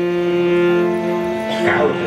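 Harmonium holding a steady chord under the sermon, the notes changing about a second and a half in.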